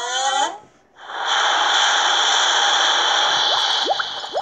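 Rushing-water sound effect from the story app, a steady wash of water about three seconds long as the animated sea rolls back over the army, stopping just before the end. A brief voice-like sound with sliding pitch comes before it, and a few quick rising whistle-like chirps come at the end.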